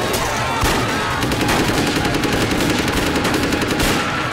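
Rapid automatic gunfire, many shots in quick succession.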